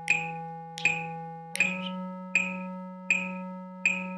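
Electronic keyboard holding the concert E major scale in whole notes: a sustained E steps up to F-sharp about one and a half seconds in. Under it a metronome clicks steadily at 80 beats per minute, about six clicks in all.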